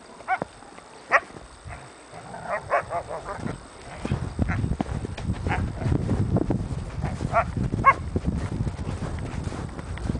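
A dog yelping in short, high cries, about seven times, while playing with a foal. Wind rumbles on the microphone from about four seconds in.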